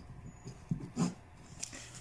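Pen strokes on paper as a heading is written and underlined: a few faint short scratches and ticks, with one slightly louder short sound about a second in.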